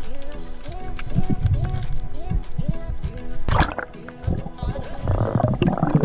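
Background music: a short note that slides up and holds, repeating about twice a second, over a low beat.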